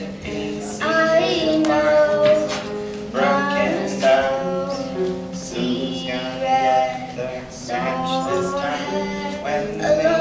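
Singing voices over a strummed small acoustic guitar, in a live folk-style performance.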